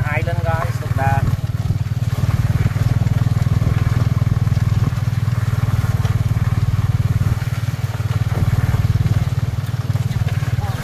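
Tuk tuk's motorcycle engine running steadily as it rides along, a low even drone with no revving. Voices talk briefly in the first second.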